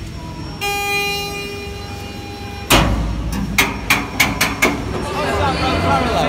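A steady horn-like tone held for about two seconds, then a loud bang and a run of sharp knocks about a third of a second apart, with football crowd noise and chatter building near the end.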